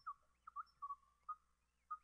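Faint R2-D2-style droid beeps and whistles played by an online R2D2 translator: a rapid string of short electronic tones with quick pitch swoops, the typed text rendered as droid sounds.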